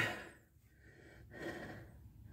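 A man's short, faint breath about a second and a half in, after the tail of a spoken phrase fades out; otherwise near quiet.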